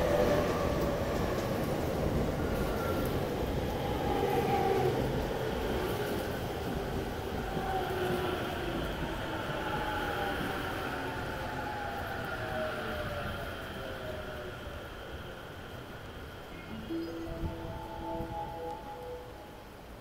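JR E231-series electric train pulling into the platform and braking to a stop. Its traction-motor inverter whine falls steadily in pitch as it slows, over wheel-on-rail rumble, and the sound fades toward the stop. Near the end a short run of steady tones sounds.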